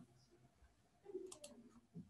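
Near silence with two faint clicks, close together, a little past halfway, typical of a computer mouse being clicked or scrolled.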